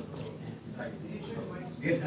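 Low, indistinct talking picked up by the table microphones, rising into clearer speech just before the end.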